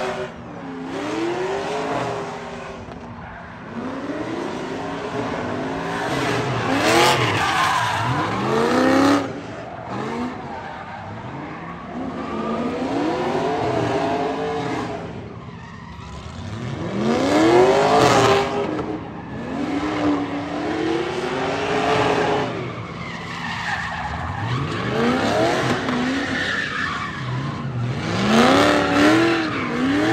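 A drift car's engine revving hard, its pitch climbing and falling back again and again as the driver works the throttle through the run, loudest around the middle and near the end. The rear tires squeal and skid as the car slides sideways, spinning them into heavy smoke.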